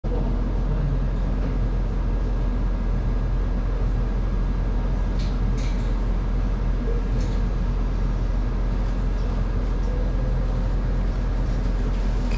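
Steady low rumbling hum of indoor shop ambience, with a few faint light clicks about five and seven seconds in.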